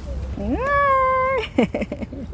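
A young child's long, high-pitched vocal cry that rises, holds steady for about a second, then breaks into a few short falling cries.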